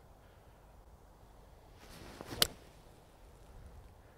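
A golf iron swishes through the downswing and strikes the ball with one sharp click about two and a half seconds in.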